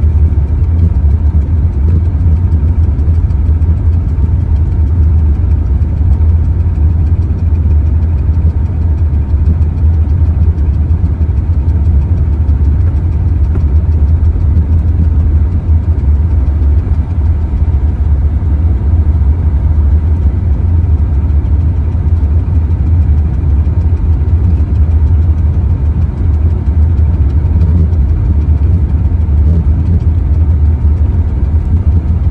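A car driving along a gravel road, heard from inside the cabin: a steady, loud, low rumble of engine and tyres on gravel.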